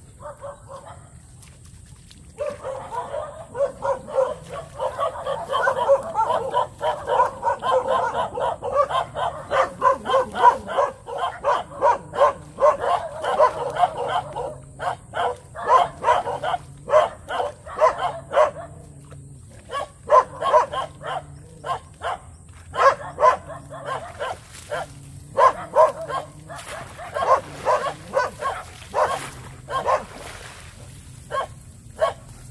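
Dogs barking over and over, starting about two seconds in: a dense, unbroken run of barks for about twelve seconds, then shorter spaced bouts of barks.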